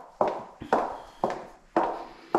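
Footsteps of a person walking on a hardwood floor, about two steps a second, four steps in all.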